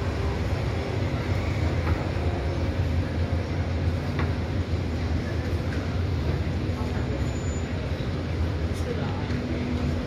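Steady urban street ambience: road traffic running alongside with a constant low rumble, and faint voices of passers-by.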